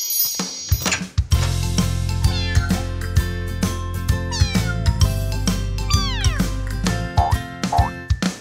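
Upbeat cartoon children's music with a steady bass line, starting about a second in, overlaid with cartoon kitten meows and a few falling, sliding sound effects.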